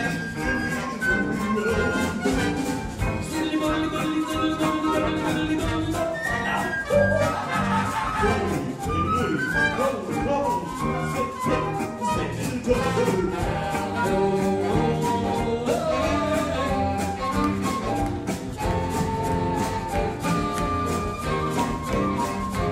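Live jazz big band playing an instrumental passage: horns and flute over piano, electric bass, drum kit and congas, with the drums keeping a steady beat.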